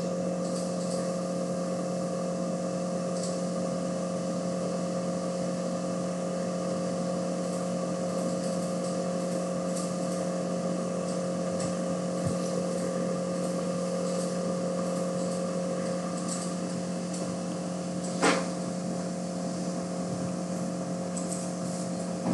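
Steady background hum of room and equipment noise, with a few constant tones and one short click about eighteen seconds in.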